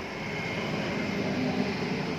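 Steady background noise, like a distant machine or fan, with a faint constant high-pitched whine.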